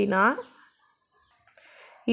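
A woman's voice drawing out the end of a word with a rising pitch in the first half second, then near silence with a faint breath-like hiss near the end.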